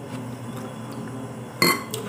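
An eating utensil clinks once against a ceramic plate about one and a half seconds in, with a short ring, over a low steady room hum.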